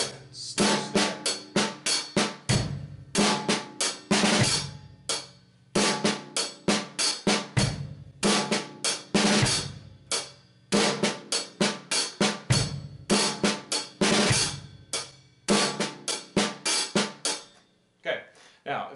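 Acoustic drum kit playing a slow rock groove: hi-hat and bass drum together under snare strokes that are mostly ghost notes and taps with two accents, the same phrase repeating about every two and a half seconds with a short break between repeats.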